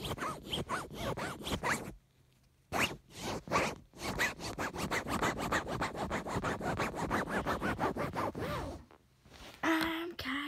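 Fingers rubbing and scratching against the recording phone right at its microphone, in fast scratchy strokes several times a second, with two brief breaks: about two seconds in and shortly before the end.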